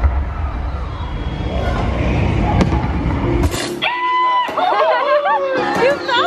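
Dark-ride show soundtrack over the attraction's speakers: a dense rumbling effect with music that cuts off about three and a half seconds in. It is followed by a high, sing-song character voice that swoops up and down in pitch.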